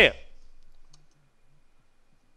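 A pause in a man's speech over a microphone: his last word fades away in the room's echo, followed by a near-quiet stretch with a few faint clicks.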